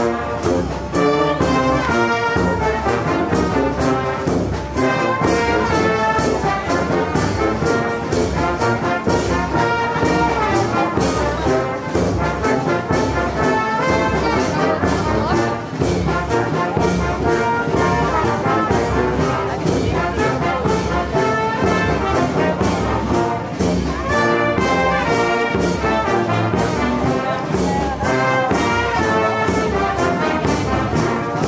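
A small brass band playing a lively tune with a steady beat: the music that accompanies a maypole ribbon dance.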